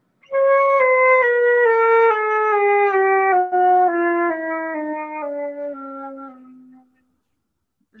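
Concert flute playing a slow descending chromatic scale over about an octave, each note held about half a second, growing softer on the lowest notes. It is played with a little air held in the cheeks, an exercise for opening the mouth cavity and focusing the tone.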